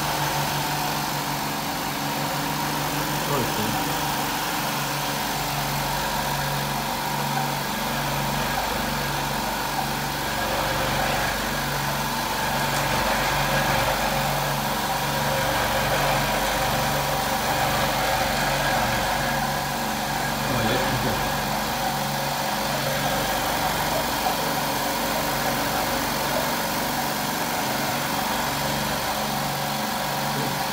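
Electric cigarette-rolling machine running, a steady mechanical hum with a low pulsing that repeats about once a second.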